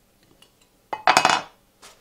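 Aluminium speed square set down on a sheet of MDF: a metallic clink about a second in that rings for about half a second, followed by a faint tap.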